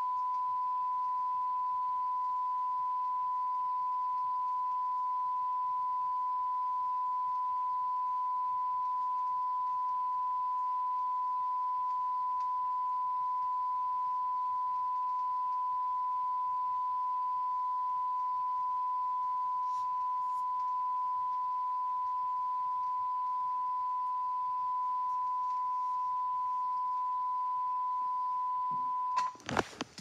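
A steady beep-like tone of one unchanging pitch from the VHS tape's audio, played through the TV while the screen shows a blank picture; it cuts off suddenly near the end, followed by a few clicks and handling noise.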